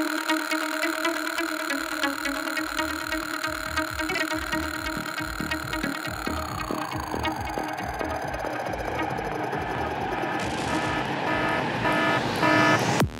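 Electronic trance music in a breakdown: the kick and bass have dropped out, leaving sustained synth tones, one of which slides steadily down in pitch over several seconds about halfway through, over a soft low pulse.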